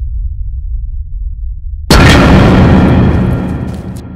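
Film sound-design effect: a steady deep rumble, then just before two seconds in a sudden loud boom that dies away slowly.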